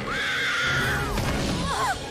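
A woman's high-pitched scream, held for about a second, followed by a short wavering cry near the end, over the orchestral film score.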